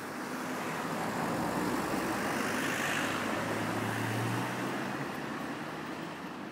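A road vehicle passing along the street: engine and tyre noise swell to a peak around the middle, with a low engine hum just after, then fade away.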